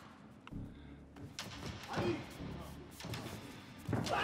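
Faint fight-arena ambience: a few dull thuds, such as feet or gloves on the mat, over faint voices and a low music bed.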